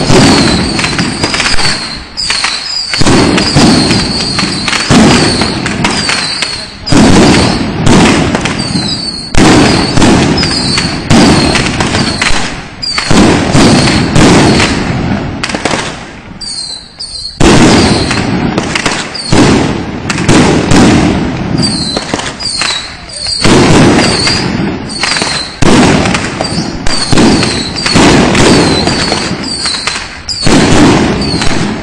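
Long strings of firecrackers going off in dense, loud crackling volleys, with short lulls about two seconds in and around the middle.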